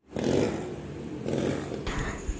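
Outdoor street noise with a small engine running, starting just after a brief silent gap.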